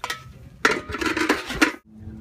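A metal pot lid and ladle clattering against a large steel stew pot: a burst of clinks and scrapes with some ringing, lasting about a second from about a third of the way in, then cut off suddenly near the end.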